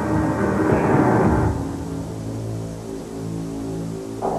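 Tense background music: a louder swell in the first second and a half, then low sustained chords.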